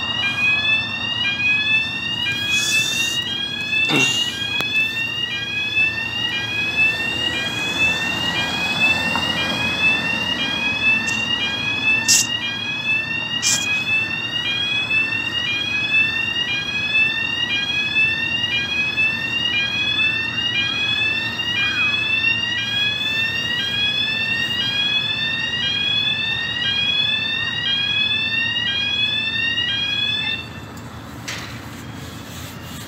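The electronic yelp alarm of a UK level-crossing-type road traffic signal, warning road users that the swing bridge is closing to traffic. It repeats as a rising electronic sweep about once a second and stops at the very end.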